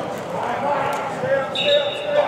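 Players and coaches shouting during a linemen's blocking drill, with a few dull thuds of pads and bodies colliding, echoing in a large indoor hall.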